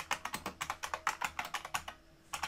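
Computer keyboard typing: a quick, even run of keystrokes, about seven a second, that stops just before the end.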